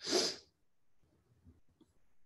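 A person sneezing once: a single sharp, noisy burst lasting about half a second.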